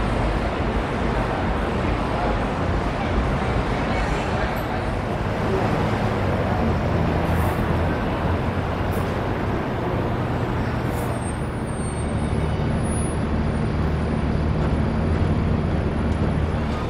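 A motor vehicle's engine running nearby over steady street traffic noise, with a low hum that holds and shifts slowly.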